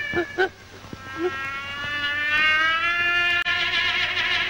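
Cartoon character crying: two short sobs, then a long wail that climbs slowly in pitch.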